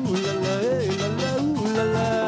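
Live merengue band playing: a melody line that rises and falls over a steady bass and percussion rhythm.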